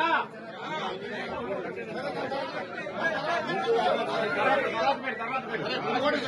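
Chatter of a crowd of men, several voices talking over each other at once, with one man speaking Telugu above the rest.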